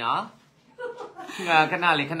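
People talking with chuckling, with a short pause about half a second in.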